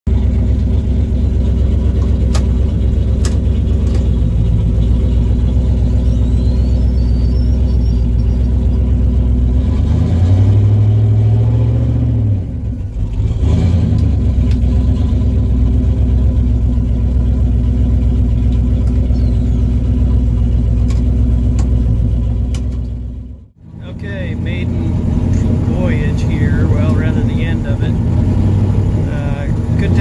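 Turbocharged 351 Windsor V8 of a 1995 Mustang running while the car is driven, heard from inside the cabin: a steady engine note that grows louder and climbs as the car accelerates about ten seconds in. A little over twenty seconds in the whole sound dips away sharply for a moment and then returns.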